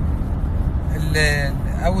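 Steady low rumble of a car heard from inside its cabin, with a man's brief drawn-out hesitation sound about a second in.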